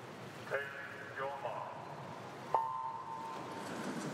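Electronic start signal for a swimming race: one steady beep that comes on suddenly about two and a half seconds in and lasts under a second, sending the backstroke swimmers off the wall. It follows a brief spoken command from the starter.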